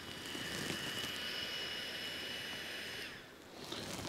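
Therm-a-Rest NeoAir Micropump, a small battery-powered fan pump, running with a steady high whir and switching off about three seconds in.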